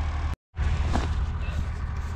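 A steady low rumble over a faint hiss, broken by a short silent gap near the start where the recording is cut, with a faint knock about a second in.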